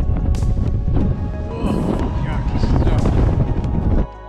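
Loud wind rushing and buffeting over the microphone of a paraglider pilot in flight, a heavy low rumble.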